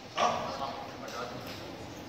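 A man's short vocal sound about a quarter second in, fading quickly, followed by quiet room noise.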